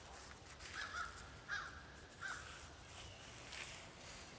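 A crow cawing three times in quick succession, with a faint scrape near the end.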